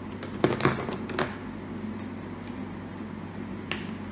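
Three quick clicks and knocks close to the microphone in the first second and a bit, then one fainter click near the end: whiteboard markers and a ruler being handled, over a steady low hum.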